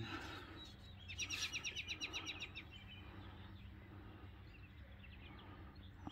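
A songbird singing a rapid, high trill of about ten notes a second for about a second and a half, starting about a second in, followed by a shorter, fainter trill.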